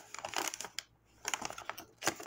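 Hand-dyed paper envelope rustling and crinkling as hands unfold and flex it, in two short patches of crackles with a brief lull about a second in.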